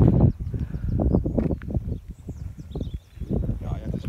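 Wind buffeting an open-air microphone in gusts, loudest at the start and easing off near the middle, with small birds chirping faintly in the background.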